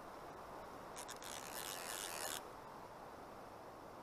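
Faint steady rush of a river running over shallows, with a rubbing, scraping noise close to the microphone starting about a second in and lasting about a second and a half.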